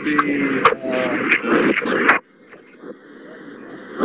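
Speech over a poor online call connection, broken and hard to make out, for about two seconds. It then drops suddenly to a quieter stretch of faint hissing noise.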